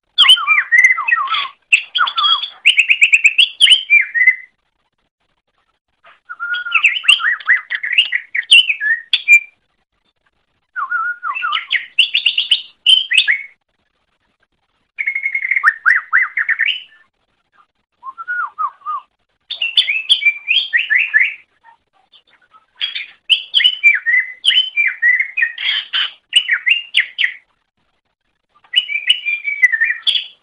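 Cucak ijo (green leafbird) singing in phrases of rapid, varied chattering and whistled notes, about seven phrases of one to four seconds each, separated by short silences.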